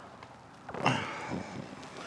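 A man's short audible breath, like a sigh, a little under a second in.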